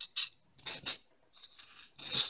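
A few short metallic scrapes and clinks of a steel hand file against a knife blade: three sharper ones in the first second, fainter ones near the end.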